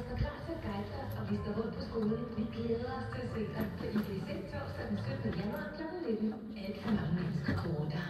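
Indistinct background voices talking, quieter than close speech, with faint music underneath.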